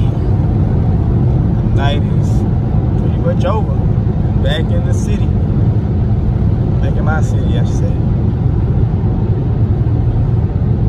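Steady low drone inside the cabin of a 2020 Dodge Widebody Scat Pack at about 98 mph: its 6.4-litre HEMI V8 running with tyre and wind noise. Short snatches of voice come over it a few times.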